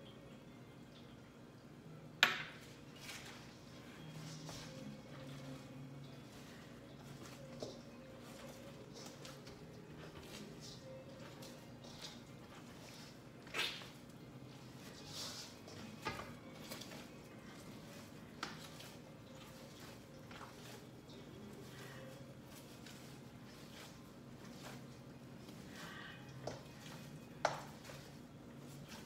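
Hands working chapati dough in a stainless-steel mixing bowl: quiet handling with sharp knocks of the metal bowl every few seconds, the loudest about two seconds in, about halfway and just before the end, over a low steady hum.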